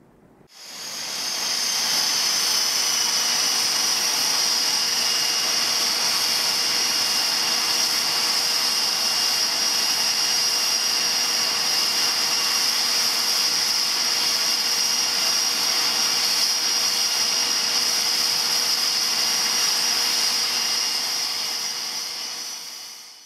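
Steady high-pitched whine over hiss from a parked ATR-600 turboprop airliner and its ground equipment, fading in just after the start and fading out at the end.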